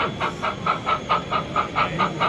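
O gauge model steam locomotive's DCC sound decoder playing a steady exhaust chuff with hiss as the engine moves off slowly, about four to five chuffs a second.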